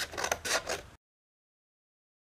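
A few short rustles of a sheet of paper being handled, then the sound cuts off abruptly to dead silence about a second in.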